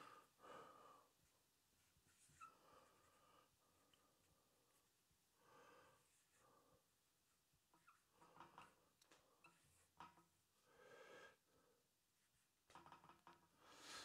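Near silence, with faint scattered strokes of a marker writing on a flip chart and soft breathing.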